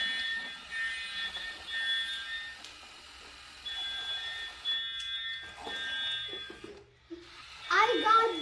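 Electronic fire-alarm buzzer on a Lego robot beeping repeatedly in two high steady pitches, with a short break about three seconds in: the robot signalling that it has detected a fire.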